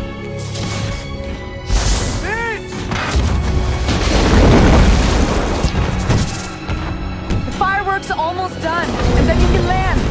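Action-film soundtrack: dramatic music under deep booms of fireworks exploding, swelling loudest about halfway through, with short wailing tones rising and falling near the start and again toward the end.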